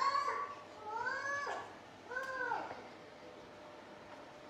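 Three short, high calls in a row, each about half a second long and rising then falling in pitch, over a faint steady hum.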